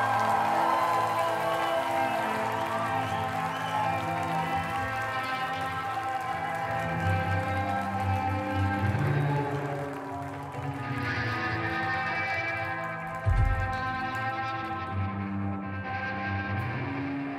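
Live rock band music: long held, droning electric guitar chords over slow low notes, with no steady beat. A single low thump comes about 13 seconds in.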